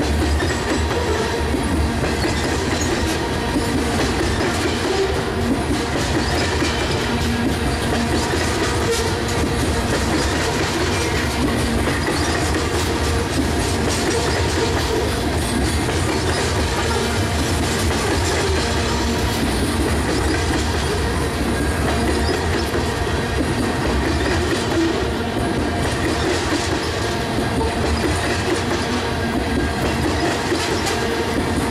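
Covered hopper cars of a freight train rolling past on welded track: a steady, loud rumble of steel wheels on rail, with faint thin ringing tones from the wheels over it.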